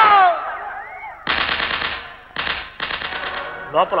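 Automatic gunfire sound effect in three bursts of rapid fire: about a second long, then a short one, then one of nearly a second.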